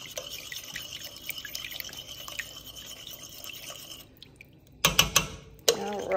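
A metal teaspoon swishing in a pot of broth with faint watery drips and splashes, rinsing the last of the chicken bouillon base off the spoon. About five seconds in come several sharp clinks of the spoon against the stainless steel pot.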